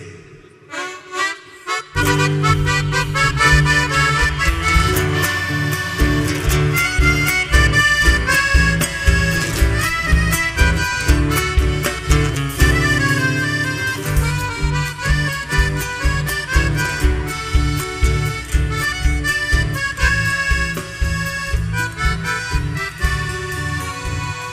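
Live folk band playing an instrumental introduction: accordion over guitars, bass and drums with a steady beat. The music starts about two seconds in after a brief quiet moment.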